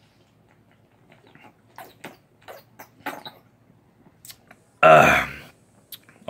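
A man drinking beer from a bottle: faint gulps and swallowing sounds, then a loud, short voiced exhale after the drink about five seconds in.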